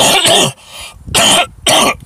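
A man coughing into his fist: three loud coughs, the first one longer, the other two short and about half a second apart.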